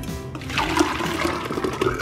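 Thick blended coconut-milk and cashew-milk ice cream mixture pouring from a blender jar into a stainless steel ice cream maker canister: a steady splashing gush of liquid that starts about half a second in.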